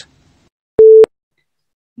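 A single short electronic beep from the PTE Academic test software, one steady mid-pitched tone about a quarter-second long that starts and stops sharply: the cue that the answer recording has begun.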